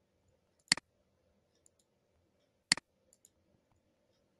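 Two computer mouse clicks about two seconds apart, each a sharp click followed at once by a softer one, with a few faint ticks in between.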